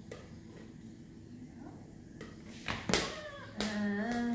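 A small rubber exercise ball being batted by hand and dropping to a wooden floor: a few sharp thuds about three seconds in, then a woman's short high-pitched cry near the end.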